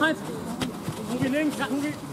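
Footballers shouting and calling to one another across the pitch, a series of drawn-out, rising-and-falling calls heard from a distance.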